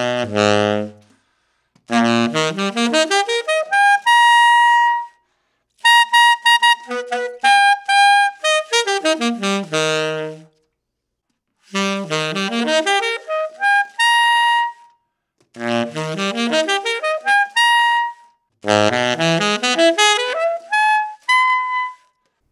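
Tenor saxophone fitted with a 1960s Otto Link Florida Super Tone Master mouthpiece, played in a pitch "slotting" test: quick runs up and down the horn's range, several ending on a held high note. About ten seconds in there is a short break, and the same mouthpiece is heard after refacing, opened up with a symmetric facing.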